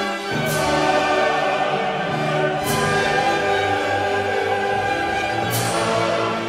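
Classical music for choir and orchestra: sustained chords, with a fuller bass coming in just after the start and a few bright accents every two to three seconds.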